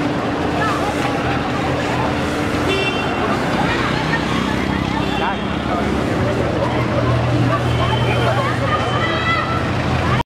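Crowd of people talking over one another on a city street, with traffic noise and a steady low engine hum that grows stronger in the second half. A brief high-pitched tone, like a vehicle horn, sounds about three seconds in.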